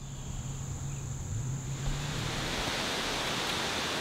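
Steady rush of falling water, a waterfall's roar, fading in from silence and growing louder over the first two seconds, then holding steady.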